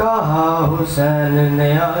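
A man chanting Urdu couplets in a slow, melodic recitation through a microphone: a short phrase, then a long held note.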